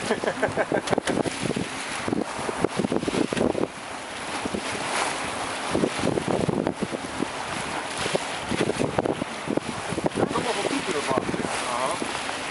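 Wind buffeting the microphone on a sailing yacht under way, gusting unevenly, with water rushing and splashing along the hull.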